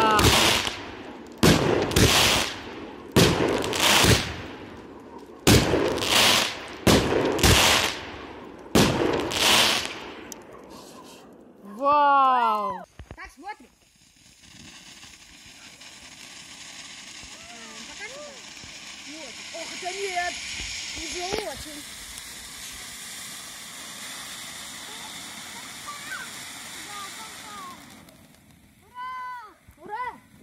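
A fireworks cake fires a rapid series of about a dozen loud bangs over roughly ten seconds, each bang echoing briefly. After a short voice, a ground fountain firework hisses steadily for about fifteen seconds, with faint voices over it.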